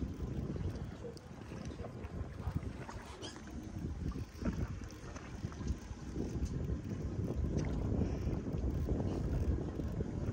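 Wind buffeting the microphone on an open boat at sea, a low, uneven rumble that swells and eases.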